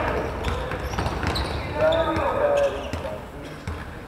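Live court sound of an indoor basketball game: a basketball bouncing on the hall floor, with players' voices calling out.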